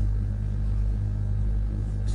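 Steady low hum with a faint hiss above it. It is background noise on the recording, with nothing else happening.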